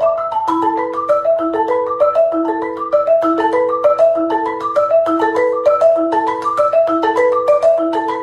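A marimba played by two players with yarn mallets: fast, continuous interlocking notes in the middle register, a short melodic pattern repeating just under once a second.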